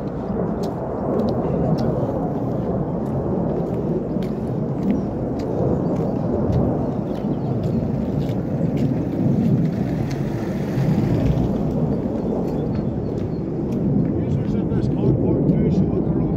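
Wind buffeting the microphone in a steady low rumble, with light footsteps ticking on pavement as the camera is carried along.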